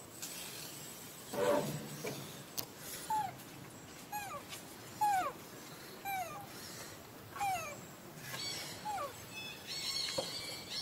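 Infant macaque calling: one louder, rougher cry, then a run of about eight short whimpering coos, roughly one a second, each falling in pitch.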